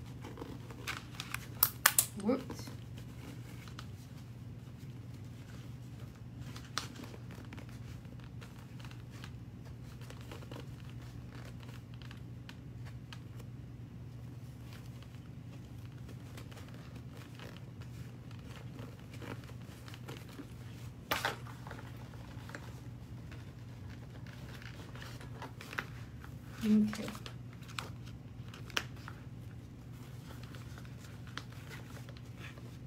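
Hands handling a clipped fabric handbag and its lining: rustling with sharp clicks of the sewing clips, a cluster of them about two seconds in and another near the two-thirds mark, over a steady low hum.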